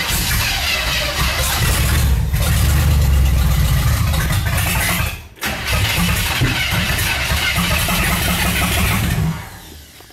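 Chevrolet El Camino engine heard from inside the cabin, cranking and running roughly, with a sudden short break about five seconds in, then fading out as it dies near the end. It runs on gas poured down the carburetor but is starved of fuel, which the owner puts down to the fuel pump or a carburetor needing a rebuild.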